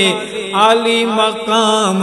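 A man singing an Urdu devotional tarana (naat-style chant). His melody bends up and down and holds its notes over a steady, hummed-sounding drone.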